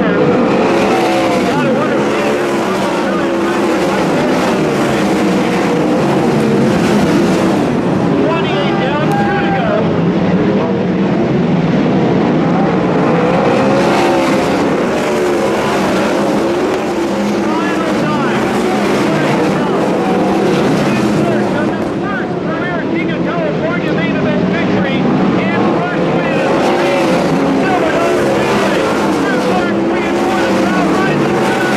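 Several 410 sprint cars' methanol-burning V8 engines running on a dirt oval, their pitch repeatedly rising and falling as they lap through the turns.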